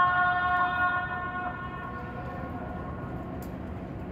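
Adhan (Islamic call to prayer) from a mosque's minaret loudspeakers: the muezzin holds one long note that dies away over the first couple of seconds, leaving a pause between phrases.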